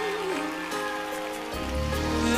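Live pop ballad accompaniment from an orchestra and band. A wavering sung note tails off in the first half second, held chords go on under it, and low bass notes come in about one and a half seconds in.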